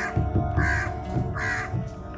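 A bird calling three times in short, evenly spaced calls over background music with a steady held note.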